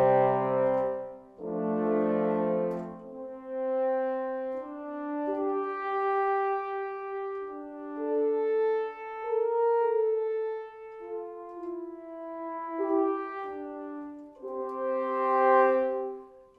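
Sampled solo French horn from Project SAM's Orchestral Essentials (taken from Orchestral Brass Classics) played polyphonically as slow sustained triads. It sounds like a small section of three horns, with one chord giving way to the next every second or two.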